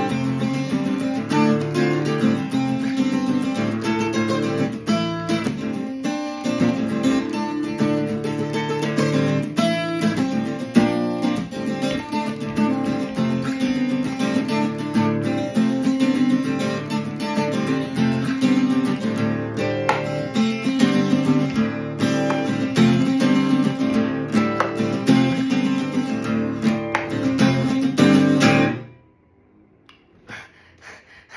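Steel-string acoustic guitar played fingerstyle in a steady, busy rhythm with strummed passages, ending suddenly about a second before the end.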